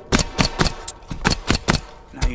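Nails being driven into metal valley flashing on a roof deck: a quick, uneven run of about seven sharp knocks.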